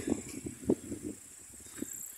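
Low rumble of slow travel along a bumpy dirt track, with a few soft knocks and a faint steady high hiss.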